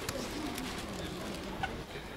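A pigeon cooing, low and wavering, over the steady hum of an outdoor city street.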